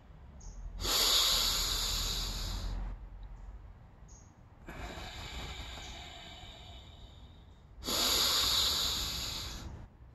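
A man taking slow deep breaths close to the microphone. There is a loud rushing breath about a second in and another near the end, each lasting about two seconds, with a quieter, longer breath between them.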